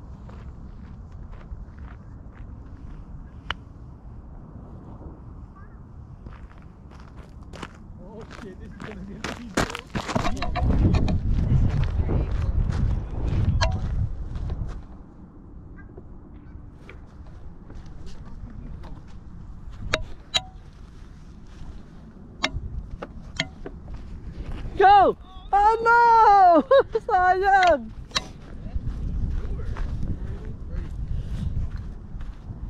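Wind rumbling on the camera microphone, with a strong gust lasting about four seconds around ten seconds in and a few sharp clicks scattered through. Near the end, a loud series of pitched calls that rise and fall, several in a row.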